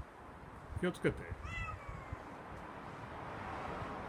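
A kitten on a roof meowing once: a single short meow that falls in pitch, about a second and a half in, just after a brief sharp sound.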